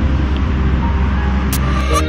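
Street traffic ambience with a low rumble, laid under quiet background music, with a couple of sharp clicks near the end. The traffic noise cuts off suddenly at the end, leaving only the music.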